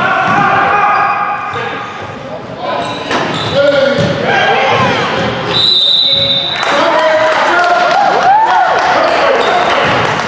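The sound of a youth basketball game in an echoing gym: players and spectators calling out, a ball bouncing on the hardwood court, and sneakers squeaking in short chirps during the play.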